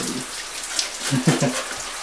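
Overhead shower spraying water onto a person and a tiled floor, a steady hiss of falling water. A short voice sound comes about a second in.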